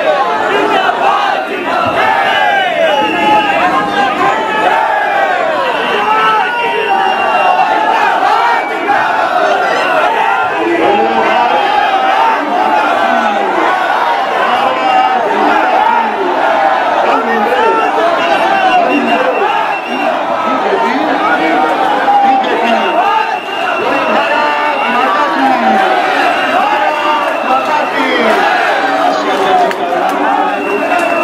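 Large street crowd shouting and chanting slogans, many voices overlapping, loud and continuous.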